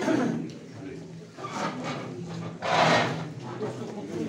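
Several men talking over one another in a small room, with no one addressing the room. About three seconds in there is a short, loud, noisy sound.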